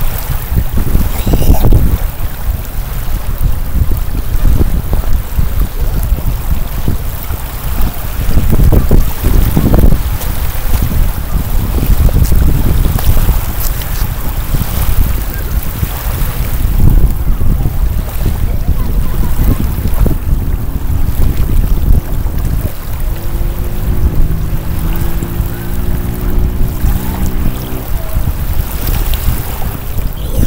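Strong wind buffeting the microphone in gusts, over small waves lapping at a lake shore. Near the end a faint steady hum of several tones joins in for a few seconds.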